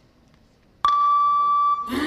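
A single loud, steady electronic beep lasting just under a second. Right after it, the routine's music begins with a sung vocal.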